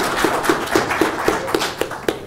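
Audience applauding, with one person clapping close to the microphone at about four claps a second; the applause dies away at the end.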